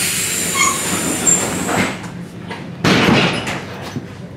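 Inside an ER2T electric train car, a long hiss of compressed air with a high whistle and brief squeaks for about two seconds, then a second loud hissing burst about three seconds in, typical of the train's pneumatic doors working.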